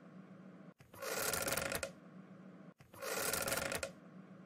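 Two short bursts of rushing, rustling noise, each about a second long, the first about a second in and the second near the end, over a faint steady hum.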